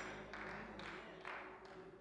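Faint scattered hand claps from a congregation, four claps about half a second apart, over a fading low sustained keyboard note.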